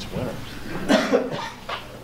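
A person coughing twice in quick succession about a second in, over faint background talk.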